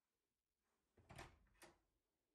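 A door being opened: a dull knock and rattle about a second in, then a sharp click half a second later.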